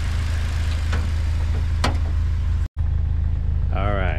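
A 2019 Toyota Corolla hatchback's four-cylinder engine idling steadily, with a couple of light clicks in the first half. The sound drops out for an instant about three-quarters through, and a brief bit of voice comes in near the end.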